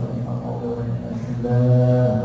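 A man chanting a prayer in a low, melodic voice through a microphone, drawing out the notes and holding a long one near the end.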